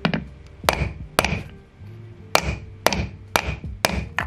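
A hammer striking a wooden block to drive a new ball bearing into an electric scooter's hub motor. There are about seven sharp blows at an uneven pace, roughly one every half second to a second.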